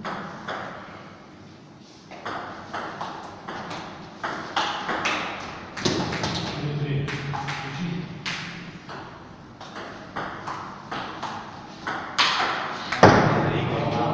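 A table tennis rally: the ball clicking sharply off the paddles and the table in quick back-and-forth, about two to three hits a second. Near the end the rally stops and a loud voice breaks in.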